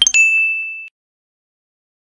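A short clang as the music stops, then a single high electronic ding, one steady tone held for most of a second before cutting off abruptly: the answer-reveal sound effect as the hidden spot is marked.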